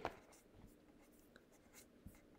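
Near silence: room tone with a faint steady hum and a soft click right at the start.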